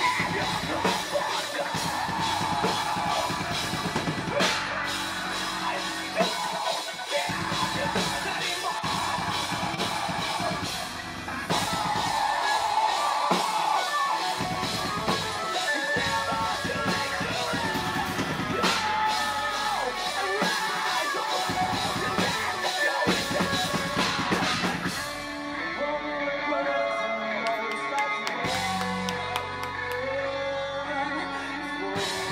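Progressive metalcore band playing live: heavy drums and distorted extended-range guitars in a stop-start pattern, the low end cutting out briefly several times. Near the end the cymbals drop away into a sparser, more melodic passage.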